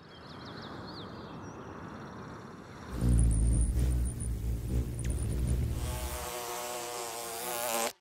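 Quiet outdoor ambience with a few high chirps. About three seconds in, a hovering hummingbird's wings hum loudly with a few thin high squeaks. Near the end a bumblebee buzzes at a steady pitch.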